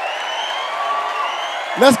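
Audience applauding and cheering steadily.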